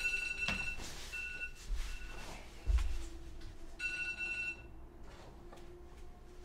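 A phone ringing: short electronic tones of one steady pitch repeating at uneven intervals, with a low thump about halfway through.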